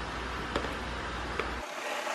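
A spatula scraping mashed banana out of a plastic bowl into a stand-mixer bowl, with two faint taps, over a low steady hum.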